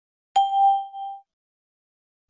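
A single bell-like ding, struck once about a third of a second in and ringing out in under a second: a chime cue between items of a recorded language-listening exercise.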